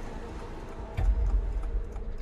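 Film trailer soundtrack: quiet, sparse music, then a deep bass hit about a second in that carries on as a low rumble.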